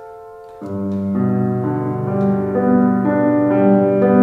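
Grand piano played solo: a held chord fades away, then about half a second in loud low bass chords enter and the music carries on in repeated chords.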